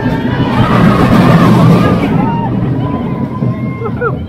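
Steel roller coaster train running along its track, a steady rumble mixed with wind on the camera microphone, which swells in the first two seconds and then eases.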